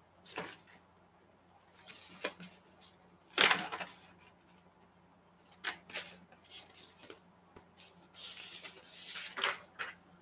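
Paper sheets rustling as they are handled, in short scattered bursts. The loudest rustle comes about three and a half seconds in, with softer rustling near the end.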